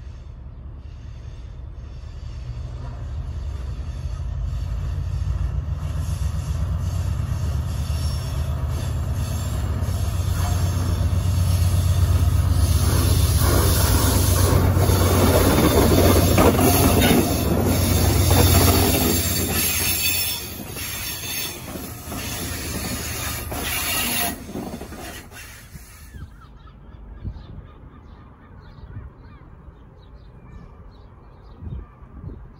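Class 68 diesel-electric locomotive with its Caterpillar V16 engine drawing near and passing at speed, a low engine throb growing to its loudest as the locomotive goes by. Wheels squeal high and steady on the curve, with clicks over the rail joints, and the sound falls away about four seconds before the end as the train's tail passes.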